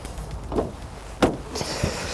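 Car driver's door being opened and someone climbing into the seat: a soft click about half a second in, a sharper knock of the door just after a second, then a rustle of clothing against the seat near the end.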